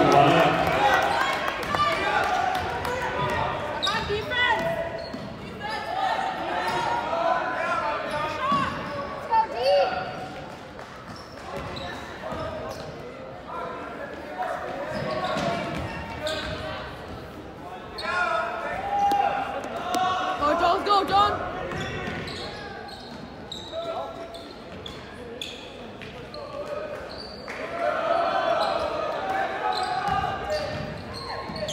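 Indoor basketball game sounds: a basketball bouncing on a hardwood gym floor amid the indistinct voices of spectators and players, all echoing in a large gym.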